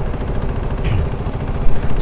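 KTM Duke 390's single-cylinder engine idling in stopped traffic, with the engines of the surrounding scooters and auto-rickshaws running around it: a steady, low, pulsing rumble.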